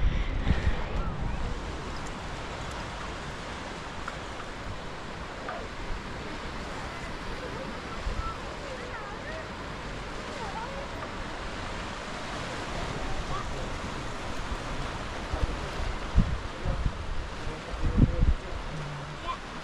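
Steady wind on the camera microphone over a haze of sea surf, with a few heavier gusts buffeting the microphone near the end.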